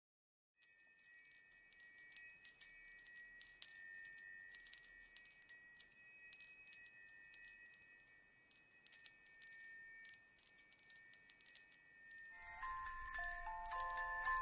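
High, tinkling chimes, many quick light strikes over a steady shimmering ring, as a sound effect under the opening titles. About twelve seconds in, a lower, bell-like melody of separate notes begins beneath them.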